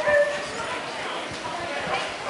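A dog barking: one loud, high bark right at the start, then fainter sounds among background voices.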